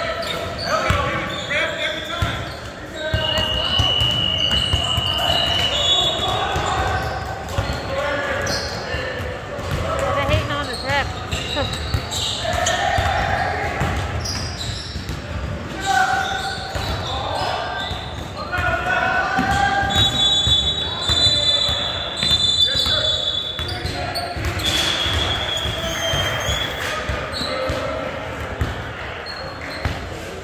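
Indoor basketball game on a hardwood court: the ball bouncing, players calling out, and high squeals now and then, echoing in a large gym.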